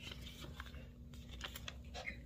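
A picture book's paper page being turned by hand: faint rustling with small irregular crinkly clicks, over a low steady hum.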